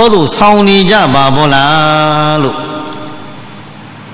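A Buddhist monk's voice intoning a chanted phrase in a sing-song melodic line. It ends on a note held steady for over a second and stops about two and a half seconds in.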